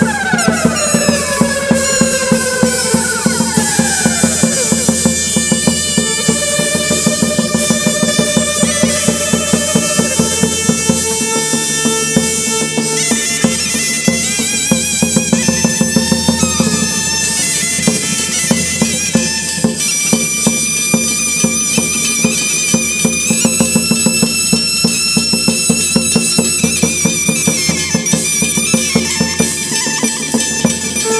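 Instrumental chầu văn ritual music: a reedy melody in long, wavering held notes over a steady drone, with a regular clicking percussion beat. Several sliding notes fall in pitch in the first few seconds.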